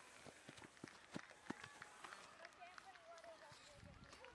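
Near-silent outdoor soccer-field ambience: scattered light taps and clicks, with a faint distant voice calling a little past halfway.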